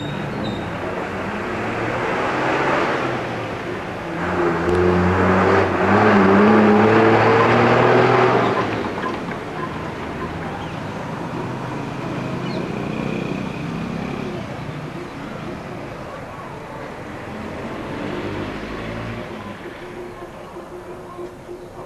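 A motor vehicle passing close by. Its engine note climbs and is loudest from about four to eight seconds in, then it fades to a lower, steady traffic noise.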